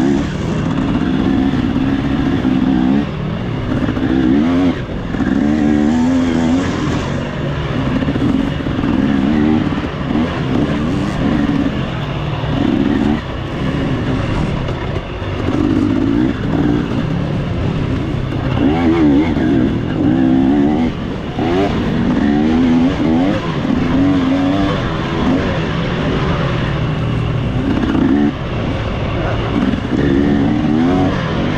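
Off-road dirt bike engine revving up and down continually, its pitch rising and falling every second or two as the throttle is worked along a trail.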